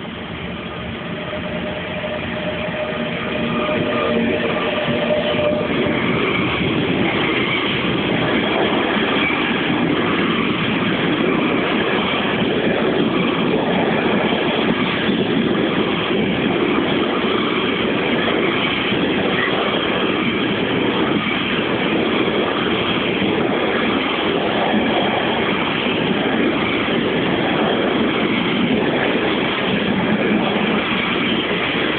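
A Siemens ES64U2 Taurus electric locomotive draws near and passes close by, growing louder over the first four seconds. Its freight train of container wagons then rolls steadily past, the wheels running on the rails.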